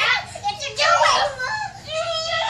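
Two toddlers' high-pitched voices, shrieking and babbling as they play-fight.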